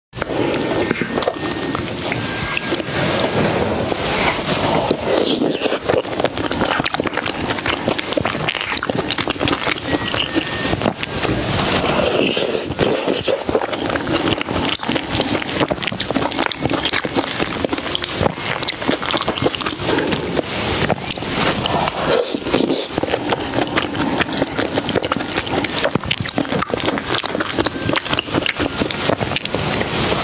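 Close-miked mouth sounds of a person eating tomato and egg soup: wet chewing with a steady stream of small sticky clicks, loud throughout.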